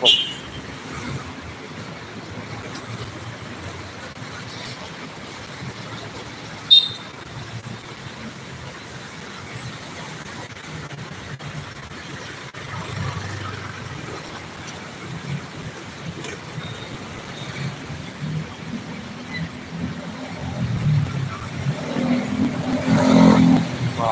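Steady road-traffic noise from cars, taxis and a bus crawling past in congested city traffic. Engine rumble grows louder in the last few seconds as vehicles move close by, with one short, sharp sound about seven seconds in.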